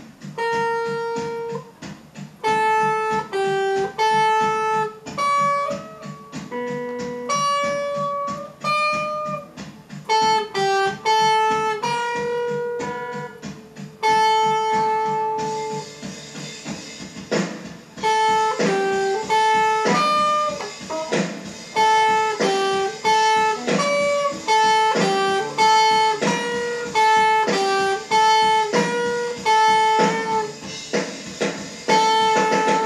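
Electric guitar played solo: a picked single-note melody, slow and spaced out at first with one long held note near the middle, then quicker and busier in the second half.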